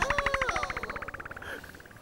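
A rapid rattling sound effect, about twenty even pulses a second, fading away over the two seconds.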